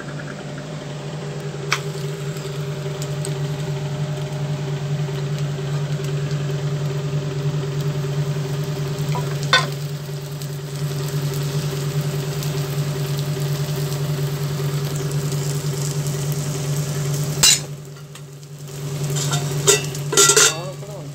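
Egg-stuffed parotta sizzling on a hot flat iron tawa, a steady frying sound over a low hum. A few sharp utensil clicks come at intervals.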